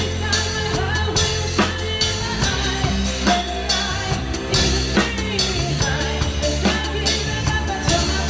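Drum kit with Sabian cymbals played along to a recorded song with a singer, the drum and cymbal strikes sitting over the backing track's steady bass line.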